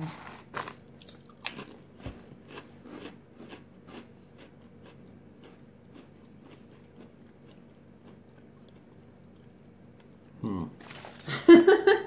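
Potato chips being bitten and chewed, crisp crunches coming quickly in the first few seconds, then thinning out into quiet chewing. Laughter breaks out near the end.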